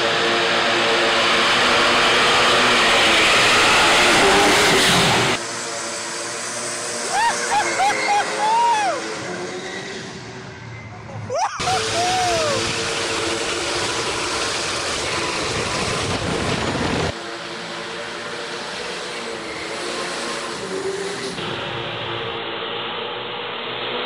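A very high-powered street car, about 1,400 hp at the wheels, running hard through burnouts with its tyres spinning, with crowd voices. The sound changes abruptly several times, shot to shot.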